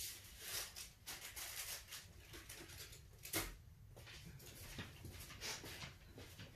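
Faint rustling and light clicks of small items being handled as a small plastic spoon is picked up, with one sharper tap about three and a half seconds in.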